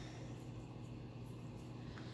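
Quiet room tone with a steady low hum and no distinct sounds.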